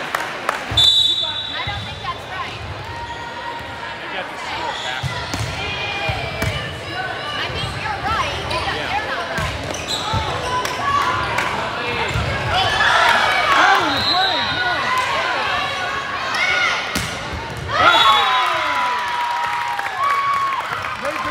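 Indoor volleyball rally in an echoing gym: the ball is struck again and again, shoes squeak on the court and players call out, with a short whistle blast about a second in. Near the end shouts and cheers go up as the point is won.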